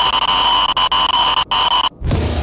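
A loud, steady electronic buzz of static carrying two fixed high tones, glitching: it cuts out abruptly for an instant about one and a half seconds in and again just before the end.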